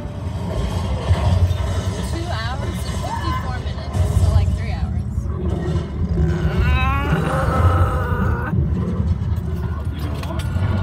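Steady low road and engine rumble inside a moving car's cabin, with short bursts of voices over it.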